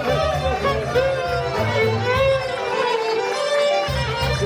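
Bosnian-style folk music: a man singing an ornamented, wavering melody over instrumental backing with a pulsing bass line.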